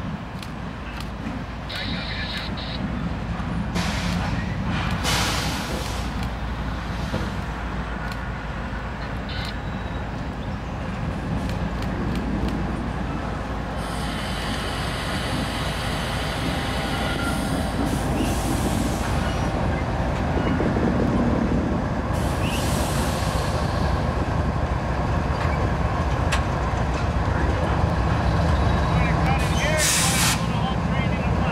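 Norfolk Southern diesel freight locomotive running slowly with its train, a steady low engine rumble throughout, with several short bursts of hiss.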